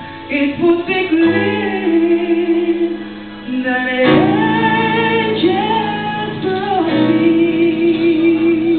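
A woman singing a slow song with long held, wavering notes over a sustained instrumental accompaniment.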